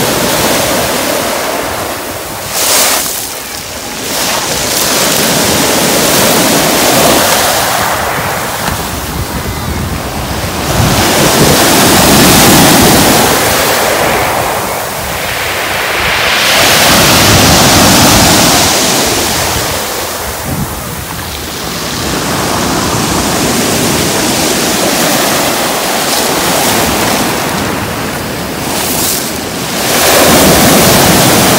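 Sea surf breaking and washing up a pebble beach, loud and continuous, swelling and easing every few seconds as each wave comes in.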